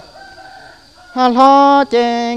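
A man singing a Hmong kwv txhiaj in a high, drawn-out voice: after a short breath pause he comes back in about a second in with a long held note that slides up slightly and then holds steady.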